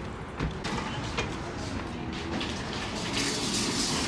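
A shop's automatic glass entrance doors being walked through: a few knocks early on, then a rushing hiss that builds near the end.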